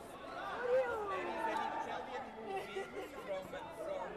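Indistinct chatter of several voices in a sports hall, with a few faint clicks.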